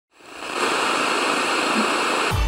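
Television static hiss: a steady, even rush of noise that fades in over about the first half second.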